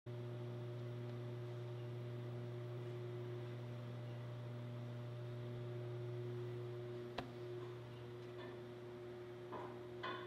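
Steady low electrical or mechanical hum, with a few fainter higher tones above it, and a single sharp click about seven seconds in.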